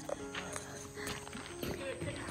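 Faint footsteps of a person walking on a dirt road, a few soft scattered steps.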